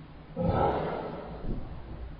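Handling noise as an iPad is set down on a mattress: about a second of rustling, then a soft thump near the end.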